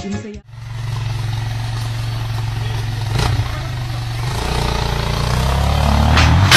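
Motorcycle engine running steadily. About four seconds in, its note deepens and grows louder, with a single click shortly before.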